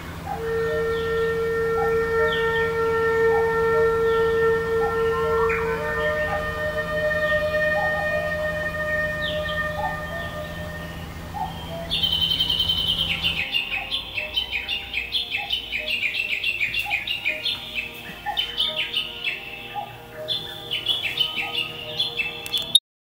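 Birds chirping, with short high calls over long held steady tones and a low steady hum that stops about halfway through. From about twelve seconds in there is a fast run of repeated high chirps.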